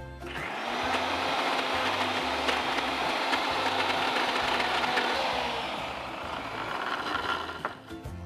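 Electric mixer grinder motor running at full speed, grinding a coarse coconut and tamarind masala into a paste. It starts just after the start, runs steadily for about seven seconds and cuts off just before the end.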